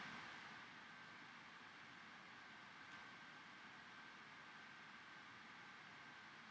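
Near silence: room tone, a faint steady hiss with a thin, steady high tone.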